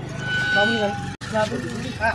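Voices talking in the background, with a short steady high tone about half a second in and a sudden break in the sound just over a second in.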